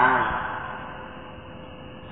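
A man's voice finishing a word in a sermon, its sound trailing off with room echo, followed by a pause of faint steady background hiss.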